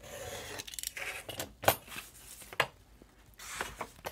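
Snap-off craft knife drawn along a ruler through a sheet of old sheet-music paper on a cutting mat, a scratchy scraping cut, followed by a few sharp knocks of the knife and ruler against the mat, the loudest near the middle.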